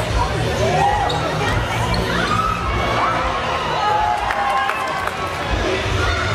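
Indoor football match in a reverberant sports hall: short squeaks of players' shoes on the hall floor and knocks of the ball being played, over a background of spectators' voices.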